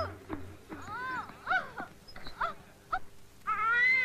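High-pitched wailing cries of grief: a string of short cries that rise and fall, then a longer wail near the end.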